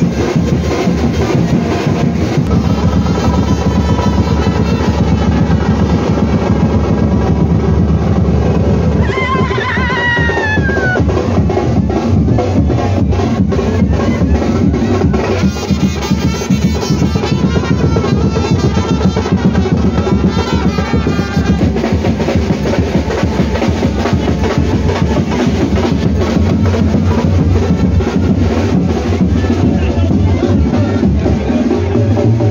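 Dhol drums played loudly and continuously in a street procession, a dense, fast, unbroken beat. A short falling pitched sound cuts through about ten seconds in.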